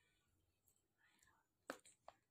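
Near silence with faint breathy, whisper-like sounds, then two short sharp clicks near the end, the first one louder.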